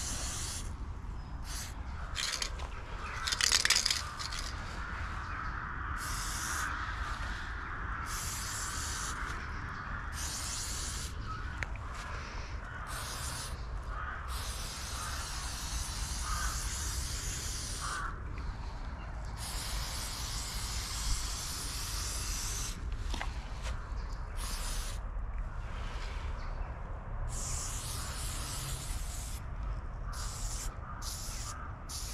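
Aerosol spray paint can hissing in repeated bursts, some short and some held for a few seconds, as a graffiti piece is painted. A steady low rumble runs underneath.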